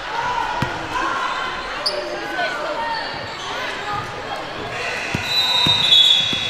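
Basketball dribbled on a hardwood gym floor amid a hubbub of players' and spectators' voices. A few bounces come close together near the end, along with a short, high, steady tone.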